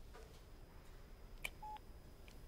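A faint click, then a single short electronic beep from a smartphone about a second and a half in, as a phone call is ended.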